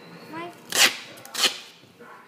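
Duct tape being pulled and torn off the roll in two short, loud rips about two-thirds of a second apart.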